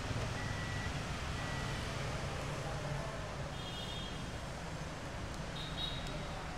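Hyundai Tucson power tailgate closing under its own motor: a steady low hum, with faint high warning beeps about midway and again near the end.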